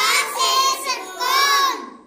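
A high voice chanting a Hindi alphabet word in a sing-song tone, in two drawn-out phrases that fade out near the end.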